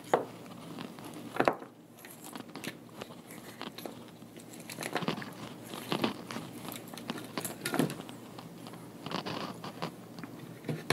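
Hand-handling of wires, alligator-clip test leads and small crimp terminals on a cloth-covered bench: scattered clicks and rustles with a few louder knocks.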